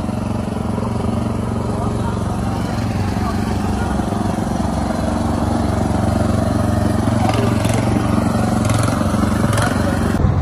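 Small portable petrol generator running steadily with a low engine hum that grows slightly louder, with a few light clicks near the end.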